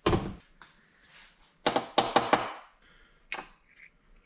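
Metal parts of a dismantled RV power jack being handled and set down on a workbench: a thunk at the start, a quick cluster of knocks about halfway through, and a short click with a brief metallic ring near the end.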